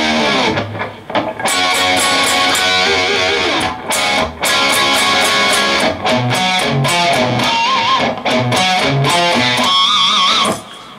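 Electric guitar played loud, a fast run of picked notes broken by short pauses about one second in and around four seconds in, with a few held notes given vibrato near the end.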